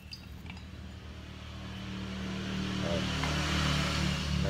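A motor vehicle's engine and road noise growing steadily louder over the last two seconds or so, above a steady low hum. Near the start, a few light clicks of a stick stirring paint in a metal tin.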